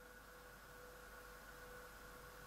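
Near silence: room tone with a faint, steady hum.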